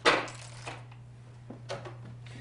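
Plastic-packaged products handled on a glass-topped table: a sharp clack as a package is set down, then a few lighter knocks and rustles as another is picked up. A steady low hum runs underneath.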